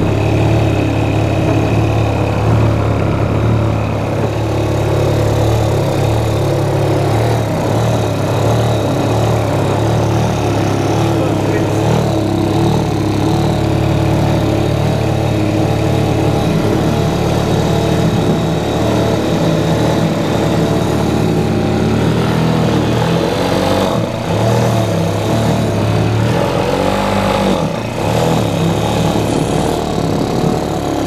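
50 cc Yamaha scooter engine running steadily on natural gas (methane) instead of petrol, its speed wavering a few times in the second half.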